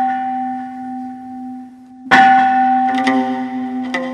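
Devotional intro music: a bell-like struck tone rings out and fades over a steady low drone, and is struck again about two seconds in. Other instrument notes join shortly after.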